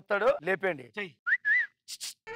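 Speech, then two short whistled notes in the second half: a quick upward slide and then a slightly longer wavering note. A brief hiss follows.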